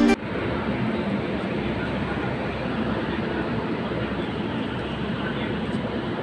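Music cuts off at the very start, then a steady, even noise of railway station ambience.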